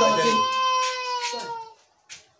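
A voice holding one long high note for about a second and a half, sinking slightly in pitch before it fades out.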